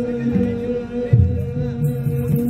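Ethiopian Orthodox Timkat hymn singing: voices hold one steady sung note over repeated low beats of a kebero drum.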